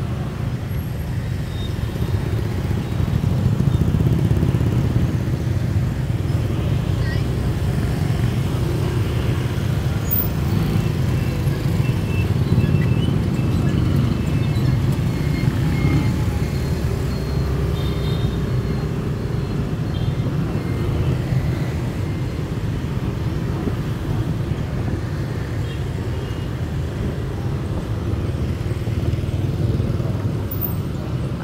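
Busy street traffic, mostly motorbikes with some cars, running close by as a steady low rumble.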